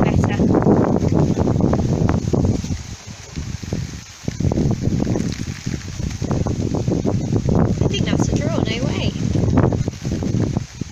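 Gusty wind buffeting the microphone, a rough noise that rises and falls, with a lull about three seconds in.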